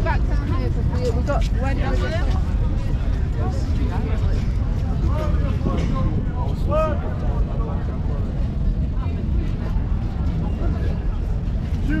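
Street ambience: scattered voices of passers-by talking over a steady low rumble.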